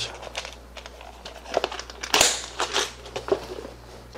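A clear plastic compartment organizer full of electronic components being handled and set down into a cardboard box packed with papers and manuals: irregular rustling, scraping and small plastic clicks, loudest a little after two seconds in.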